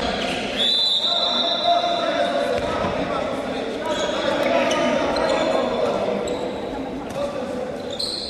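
Handball bouncing on the hardwood floor of a sports hall during play, with players' voices echoing around the hall. A high steady tone sounds for about two seconds starting about half a second in.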